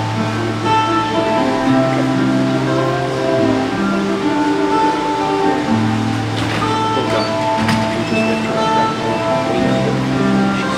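Slow instrumental worship music played live by guitar and bass guitar: long held chords over a slow bass line, with a few light strums, and no singing.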